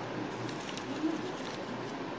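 Paper rustling and creasing as a white sheet is folded into an origami crane, with faint short clicks. About a second in, a low call rises and falls once.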